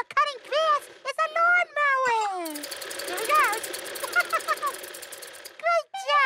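Push reel lawnmower's spinning blades cutting grass: a rapid, dense clatter that starts about halfway through and stops shortly before the end.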